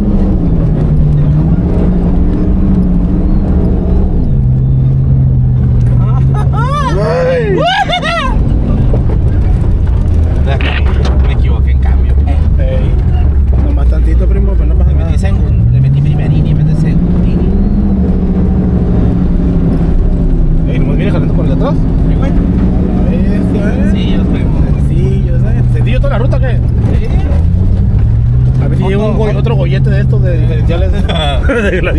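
Off-road truck engine heard from inside the cab while driving through desert sand, its revs rising and falling repeatedly as the throttle and load change, with a steady low rumble from the drivetrain and tyres.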